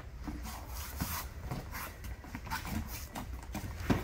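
Two grapplers in cotton gis moving on a foam mat during a sit-up sweep: irregular soft thumps and scuffs of bare feet and bodies on the mat, with cloth rustling and a louder thump near the end.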